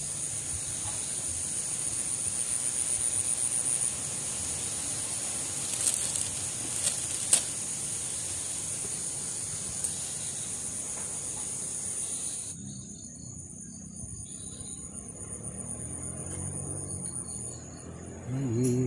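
A steady, high-pitched insect chorus sounding all through, with the background hiss dropping away about twelve seconds in. A few short, light clicks come in the middle.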